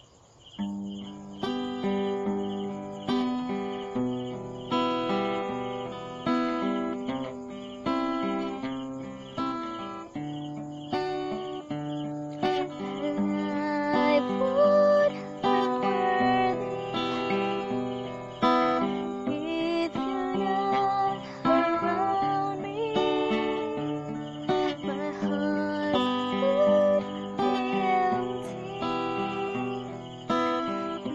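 A slow song carried by strummed acoustic guitar chords, starting just after the opening. A regular cricket-like chirping sounds underneath for the first several seconds.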